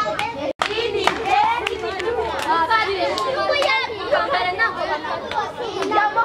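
Many children's voices chattering and calling at once, with sharp clap-like clicks scattered throughout and a momentary dropout about half a second in.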